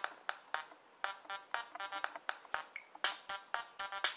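RD3 Groovebox synth app running a 303-style bassline and drum machine pattern at 128 BPM: short pitched synth bass notes with crisp high hits, about four a second. The pattern gets louder about three seconds in as the mix levels are changed.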